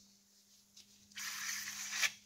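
Plastic syringe being rinsed with mineral spirits: a short hissing rush of liquid through the syringe, starting about halfway in and lasting just under a second.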